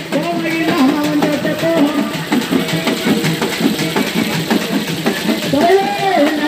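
Irular folk music: a held, stepping melody over dense, steady drumbeats.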